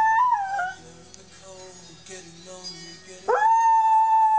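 Border Collie howling: a long held howl wavers and falls away under a second in, and a new howl rises sharply just after three seconds in and holds steady. Music plays quietly underneath.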